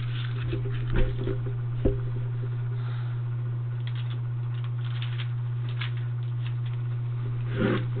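A steady low hum throughout, with a couple of light knocks about one and two seconds in and a soft rustle near the end.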